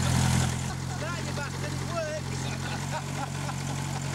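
An engine idling steadily, a low even hum.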